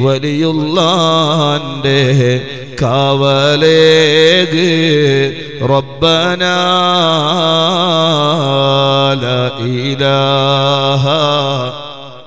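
A man chanting an Islamic devotional recitation into a microphone over a PA, one voice in long held, ornamented melodic phrases that stop just before the end.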